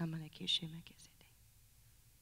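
A woman speaking a few soft words into a microphone, stopping about a second in, then quiet room tone.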